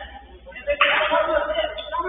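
A football struck hard with a sudden sharp smack a little under a second in, followed by a man's loud shout of about a second.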